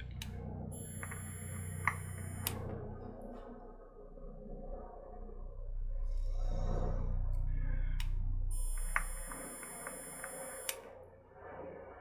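A box mod vape set to 13.5 watts fired twice, each draw lasting about two seconds: a click as the fire button is pressed, a steady high electronic whine while the coil fires, and a click on release. A breathy exhale of vapour comes between the two draws.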